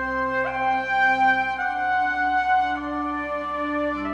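Soft background music: slow, sustained notes that change every second or so.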